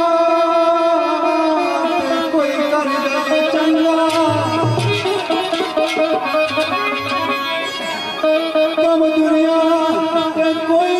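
Live Pakistani folk music: a long held sung note, then an instrumental passage of a plucked string instrument over hand-drum strokes, with the held note returning near the end.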